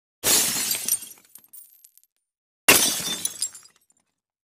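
Two glass-shattering sound effects: a sudden crash just after the start and another about two and a half seconds in, each trailing off in scattered high tinkles.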